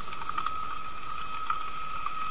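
Underwater ambience recorded through a camera housing: a steady hiss with a constant high whine and scattered faint clicks.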